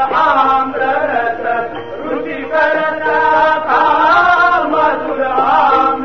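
A voice singing a chant-like melody over a steady held drone.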